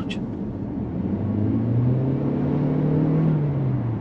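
Toyota Corolla Cross hybrid's 2.0-litre four-cylinder petrol engine pulling under hard acceleration. Its hum builds from about a second in and rises slowly in pitch, then eases off near the end.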